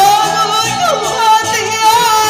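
A performer singing in Taiwanese opera (gezaixi) style through a handheld microphone, holding long notes with vibrato and sliding between them, over instrumental accompaniment.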